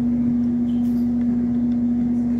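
A steady low hum: a single unchanging tone that holds at the same level throughout, with a few faint ticks over it.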